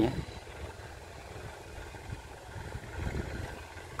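Distant tractor engine running steadily as it pulls a cultivator through the soil, heard faintly.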